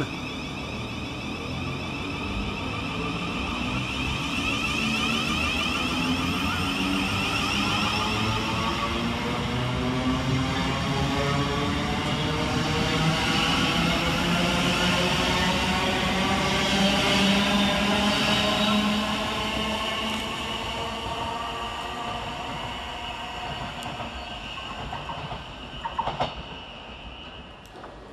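Thameslink Class 700 Desiro City electric multiple unit pulling away from the platform, its traction motors whining in a pitch that climbs steadily as it accelerates. The sound grows louder for the first two-thirds and then fades as the train draws away.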